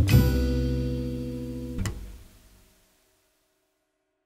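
Final chord of guitar-led instrumental music ringing out and slowly decaying, with one last short hit just under two seconds in before it fades away.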